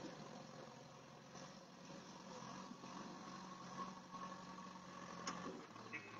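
Faint, steady running of a JCB backhoe loader's diesel engine, with a single sharp click about five seconds in.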